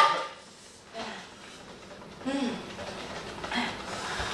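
Quiet room with brief, faint voices: a short vocal sound a little after two seconds and another near the end.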